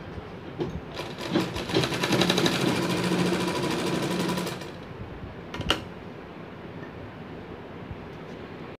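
Black domestic sewing machine stitching a seam in cotton fabric at a rapid, even pace for about four seconds, starting about a second in, then stopping. A single sharp click comes about a second after it stops.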